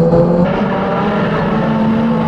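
Banger race car engines running on the track, a steady engine note that shifts slightly higher near the end.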